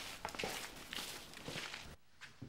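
Footsteps of several people walking across a gritty dirt courtyard: irregular scuffing steps.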